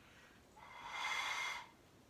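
A long breath blown through a small plastic bubble wand to make soap bubbles. It is an airy rush that swells and fades over about a second.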